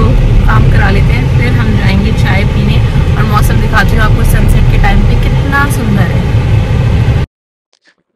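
Loud, steady low rumble of road and engine noise inside a moving car, with a woman's talking half-buried under it. It cuts off suddenly near the end.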